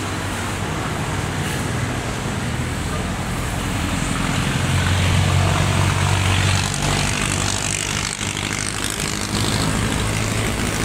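A motor vehicle engine running with traffic noise: a steady low hum that grows louder about four seconds in and eases back near seven seconds.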